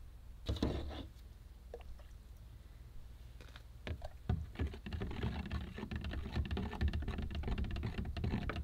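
A mixer paddle stirred by hand in a plastic measuring jug of liquid fertilizer. It knocks against the jug a few times early on, then clicks and knocks rapidly and irregularly from about four seconds in.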